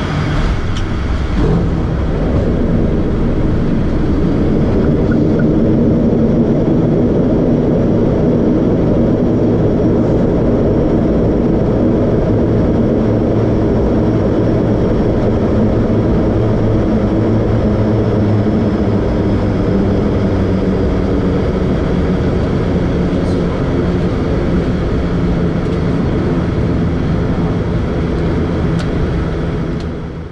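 ATR turboprop engines and propellers heard from inside the cockpit, running steadily as a drone with a low propeller hum while the aircraft rolls along the runway after landing.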